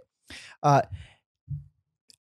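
A man's breathy sigh, then a hesitant "uh" and a short low murmur.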